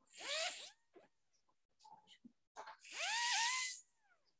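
Polishing disc on a low-speed dental contra-angle handpiece, run in two short bursts against composite veneers. Each burst spins up with a rising whine over a hiss, holds briefly and winds down.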